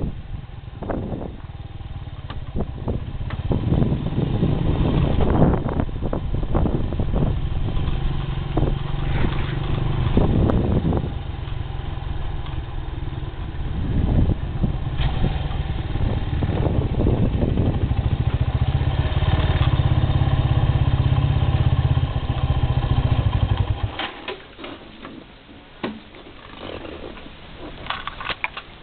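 Motor scooter engine running while being ridden, its level rising and falling; the engine cuts off suddenly near the end, leaving a few light knocks and clicks.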